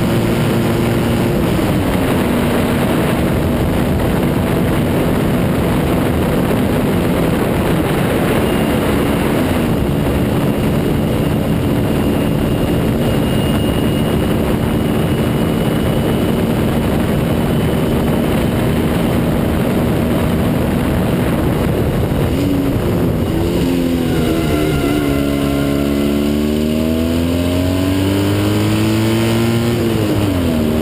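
Fiat 126-based two-cylinder engine of a Matuška F1.26 single-seater racing car, heard from the cockpit and held at high revs. Its pitch drops sharply at gear changes about a second and a half in and again about nine seconds in. Over the last third the revs fall and climb several times, then rise and drop again at the end.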